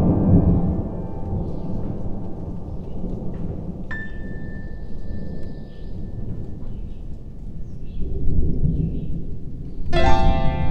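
Rolling thunder over steady rain. The rumble is strongest at the start, eases off, then swells again near the end. A faint single ringing note sounds about four seconds in.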